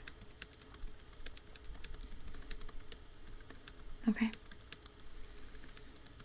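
Faint computer keyboard typing: quick, irregular key clicks.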